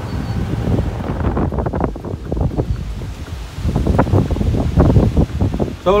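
Wind buffeting the microphone in a moving open golf cart: an uneven, gusty rumble that grows heavier in the second half.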